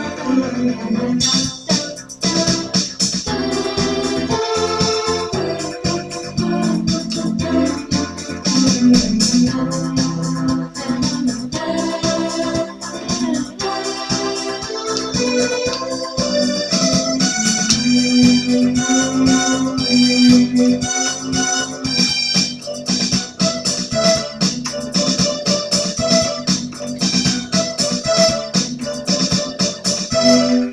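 Portable electronic keyboard being played: a continuous stream of notes and chords, with the notes held steadily rather than dying away.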